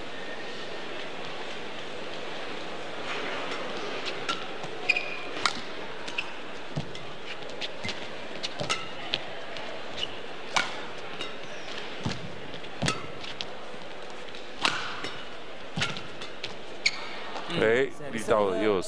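Badminton rally: about a dozen sharp racket strikes on a feather shuttlecock at an irregular pace, with brief shoe squeaks on the court, over a steady arena crowd murmur.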